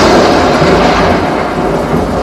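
A loud, beatless rumbling noise effect in the dance's backing track played over the PA, fading a little over the two seconds, like a thunder roll between sections of the music.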